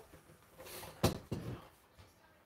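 A sharp knock about a second in and a softer one just after, from a wooden stove-cover board being handled and lifted up.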